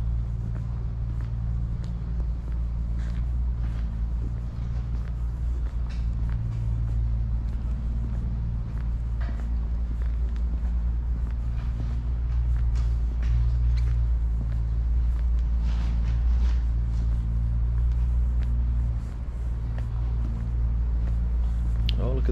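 Steady low rumble throughout, with faint footsteps of a person walking on a tarmac path.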